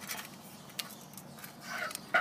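Handling noise as a white bracket with a flat razor scraper resting on it is picked up: a few light clicks and taps, then a brief rubbing sound near the end.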